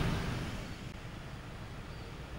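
Outdoor background noise: a low, steady rumble with a light hiss, fading down over the first second and then staying faint.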